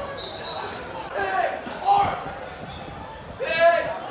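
Players and coaches shouting on a football practice field over a low murmur of voices: a couple of short calls, a brief knock, then one loud shout near the end.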